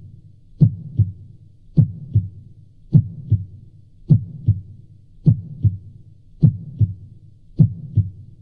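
Heartbeat sound effect: low, slow double thumps (lub-dub), evenly spaced at a little under one beat a second, seven beats in a row.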